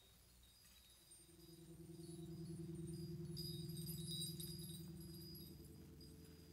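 Quiet opening of a jazz performance: shimmering metallic chimes ring over a low sustained note that swells from about a second in, peaks midway and fades away.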